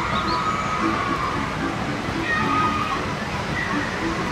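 Outdoor ambience: a steady rushing noise, with faint snatches of music and voices over it.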